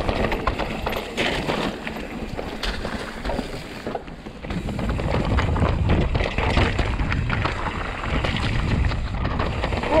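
Mountain bike descending rocky singletrack: tyres rolling and crunching over loose stone, with a clatter of knocks and rattles from the bike over the rocks. Wind buffets the microphone, and the rumble grows louder about halfway through as the pace picks up.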